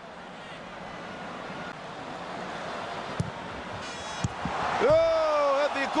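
Football stadium crowd noise swelling steadily louder, with a couple of short thumps past the middle. Near the end a man's long, slowly falling exclamation rises over the crowd.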